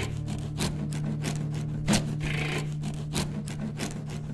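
A metal hand tool scraping a plastered wall in slow, repeated rasping strokes about every second and a half, over a steady low hum.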